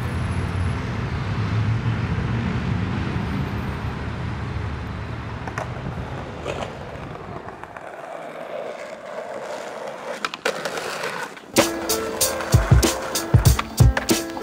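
Steady rumble of city traffic, then skateboard wheels rolling on stone paving. Music with a sharp, regular beat comes in about three-quarters of the way through.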